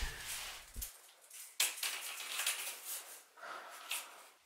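Light handling noises as a length of wooden trim is held and fitted against a wall: rustling and scraping, a sharp knock about a second and a half in, and a short click near the end.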